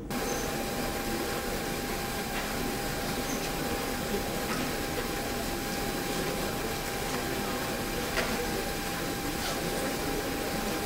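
Steady background hiss with a thin, steady whine running through it, and a few faint clicks.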